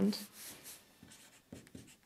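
Marker pen writing a word on a paper chart: faint strokes of the tip rubbing on paper, a few in the first second and a couple more near the end.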